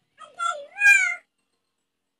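A cat meowing: one drawn-out call of about a second that dips and rises in pitch and is loudest in its second half.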